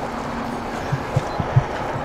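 Steady background noise of an industrial truck yard, with a faint low hum that fades after about half a second and a run of soft low thumps in the second half.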